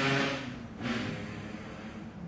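A woman's voice trailing off, followed by a short breathy hiss, then low room tone.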